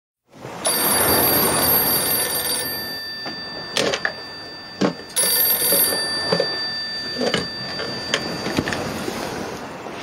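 A telephone ringing: one ring of about two seconds, then a second, shorter ring that is cut off, with a few scattered knocks and thuds between and after the rings over a steady background hiss.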